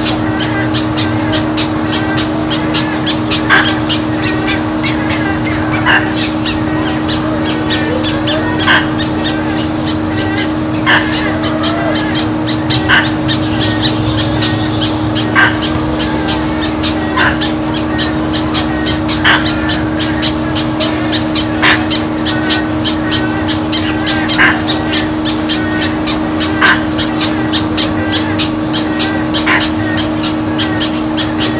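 A bird giving a short, loud call about every two seconds, about a dozen times, over a steady low hum and a fast, even ticking.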